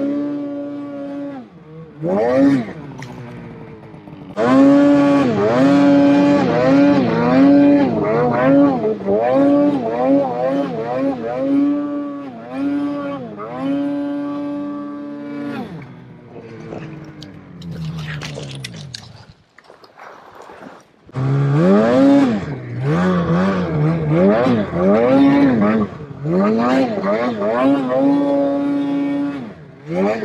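Ski-Doo snowmobile engine revving up and falling back again and again as the throttle is worked through deep powder. About two-thirds of the way through it drops low and quiet for a couple of seconds, then revs up and down again.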